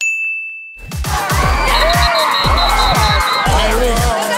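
A single bright "ding" sound effect, a chime that rings for under a second, marking a correct answer. About a second in, music with a heavy, regular beat starts up.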